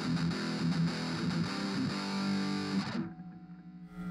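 Distorted electric guitar played through an Orange Crush 20 practice amp on its dirty channel, with the master volume at one. A metal riff is played and stops about three seconds in. At this low setting the amp already sounds opened up.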